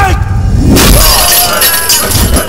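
A sudden loud smash with shattering, about three-quarters of a second in, over a low musical score.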